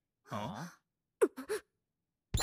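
A cartoon character's voice: one drawn-out breathy sound that bends in pitch, then two very short sounds just past the middle, like a sigh followed by a quick gasp.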